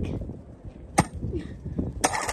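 A sledgehammer with a crushed aluminium drink can stuck on its head gives a single sharp knock about a second in, against low scuffing and handling noise, as it is worked to shake the jammed can loose.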